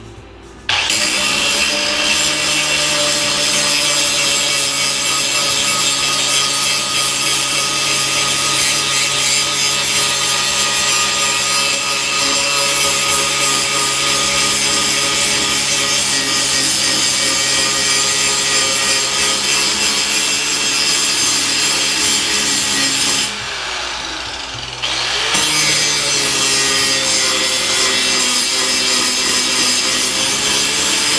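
Angle grinder spinning up about a second in and then grinding down rough welds on a metal plate, a steady loud grinding. It goes quieter for about two seconds about three quarters of the way through, then bites in again.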